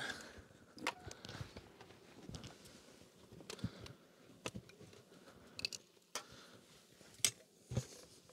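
Scattered light knocks and clinks as a sheet-metal-covered lid is set on a wooden beehive box and pressed down, over a faint rustle of handling. The sharpest knock comes a little after seven seconds in.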